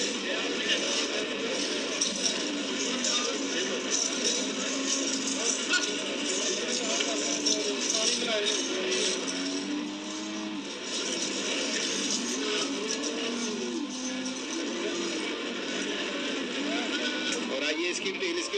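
Indistinct overlapping voices mixed with music, over a steady hiss.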